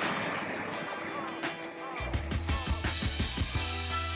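Background music: a softer stretch, then a steady bass line and held notes come in about two seconds in.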